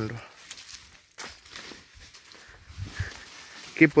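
Footsteps on dry fallen leaves and pruned cacao branches: a few soft steps and crackles over a quiet outdoor background.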